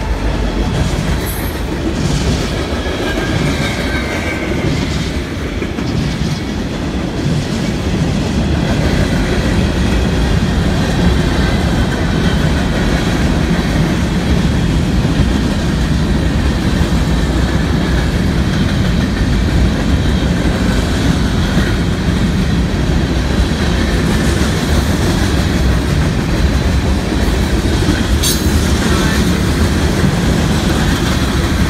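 Freight train cars rolling past close by: a loud, steady rumble with clickety-clack of steel wheels over the rails.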